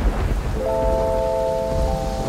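Rain with a low rumble of thunder, joined about half a second in by a held chord of sustained notes.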